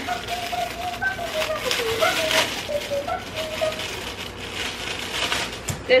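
Thin plastic packaging crinkling and rustling as a small item is handled and pulled out of its bag, with a faint voice humming or murmuring behind it for the first few seconds.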